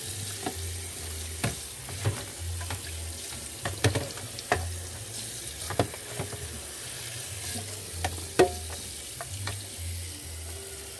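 Kitchen tap running steadily into a plastic bowl of soapy water in a stainless steel sink while juicer parts are scrubbed, with scattered clinks and knocks of the plastic parts against the bowl and sink, the loudest one late on.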